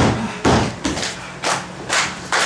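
A run of sharp slaps and thuds, about two a second, each ringing briefly in a hard-walled room.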